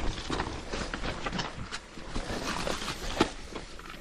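Mountain bike riding down a wet, muddy forest trail: tyre noise on the sloppy dirt with irregular clicks, knocks and rattles from the bike over the bumps.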